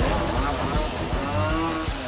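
Gas chainsaw running loudly, its engine pitch rising and falling as it is revved.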